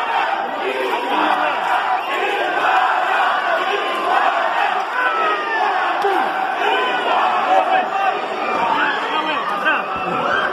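A crowd of wrestling spectators shouting and yelling over one another, steadily loud with no let-up.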